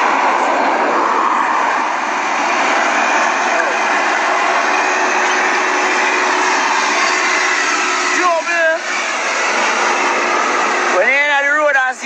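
Backhoe loader's diesel engine running as it drives along the road, heard as a loud, steady roar. A man shouts briefly about eight seconds in, and a man starts talking near the end.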